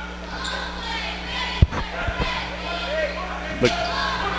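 A basketball bouncing a few times on a hardwood gym floor as it is dribbled, the loudest bounce about one and a half seconds in, over crowd murmur in a large hall.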